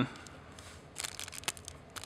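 Plastic wrapper of a sensor-cleaning swab being opened by hand: faint crinkles and small clicks, starting about a second in.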